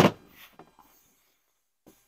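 A plastic snorkel body rubbing and bumping against a car's fender as it is pressed into place, loudest at the very start and fading quickly, with one small click near the end.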